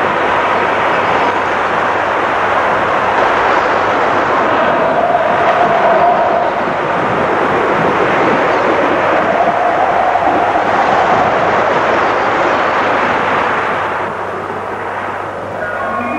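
Wind blowing through a forest: a steady, loud rush with a faint howling whistle that swells and fades a few times, easing off near the end.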